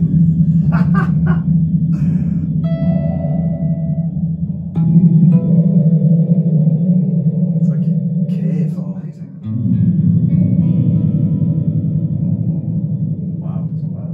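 Electric guitar (Duesenberg Starplayer TV) playing chords through the M-Vave Mini Universe reverb pedal on its lo-fi setting, amplified through a Marshall 1x12 cab. Chords are struck about five seconds apart, each left ringing and slowly fading in a long reverb wash.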